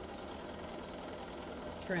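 Electric sewing machine running steadily, stitching fabric through a paper foundation for a foundation-paper-pieced quilt block.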